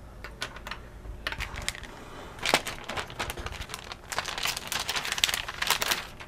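A few small clicks as a RAM stick is worked out of a laptop's memory slot. From about two and a half seconds in, the dense crinkling of a metallic anti-static bag being handled, loudest in the last two seconds.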